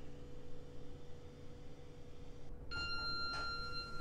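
Elevator arrival chime: a single ringing tone begins about two-thirds of the way in and is held for about two seconds, over a steady low hum in the elevator car.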